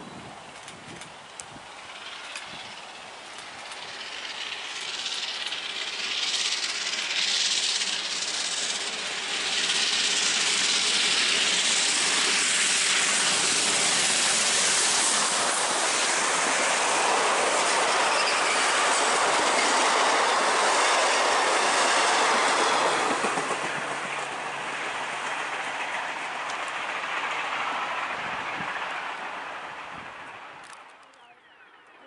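A steam-hauled passenger train, led by the Victorian Railways R class steam locomotive R711, approaching and passing close by. The sound builds over the first ten seconds or so and stays loud while the carriages' wheels roll past on the rails, then eases and fades away near the end.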